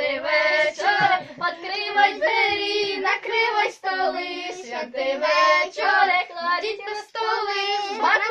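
Group of children with a girl's voice among them singing a Ukrainian Christmas carol (koliadka) together.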